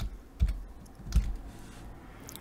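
A few keystrokes on a computer keyboard typing a word, the loudest about half a second in and just over a second in.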